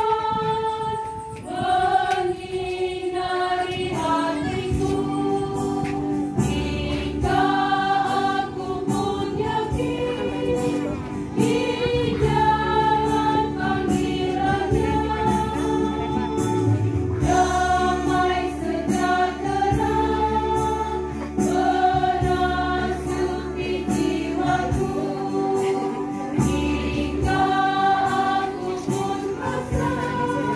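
Church choir singing a processional hymn in phrases a few seconds long, over sustained low accompanying notes that change every few seconds.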